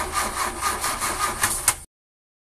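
A broken-down engine cranking without starting: a rhythmic grinding chug, about six pulses a second over a low hum, that cuts off suddenly with a click near the end.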